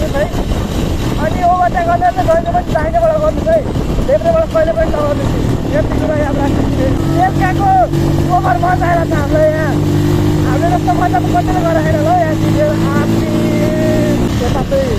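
Motorcycle engine running at a steady cruising speed with wind rushing over the microphone; its steady hum comes through more clearly about five seconds in. A voice sounds over it in short phrases throughout.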